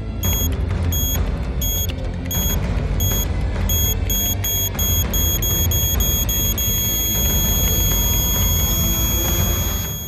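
A bomb timer's high electronic beeps over tense film-score music with a heavy low pulse. The beeps quicken from about one and a half to three a second, then merge into one long held tone for the last third.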